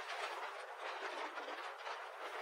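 Waves breaking and washing over concrete tetrapod blocks on a seawall: a steady rush of surf and spray.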